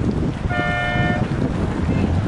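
A single short horn toot at one steady pitch, lasting under a second about halfway in, over wind buffeting the microphone.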